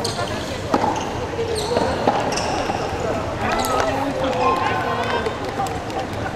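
Rackets striking the ball in a rally, two sharp knocks about a second and a half apart, among players' calls and voices echoing in a large sports hall.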